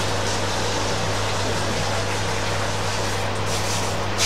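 Steady rush of water from a shower hose spraying onto a dog's coat in a steel grooming tub, over a constant low hum.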